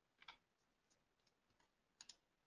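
Near silence with a few faint, short clicks.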